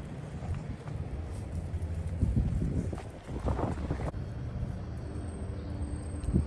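Wind rumbling on the microphone outdoors, a steady low buffeting, with a few faint ticks and scuffs.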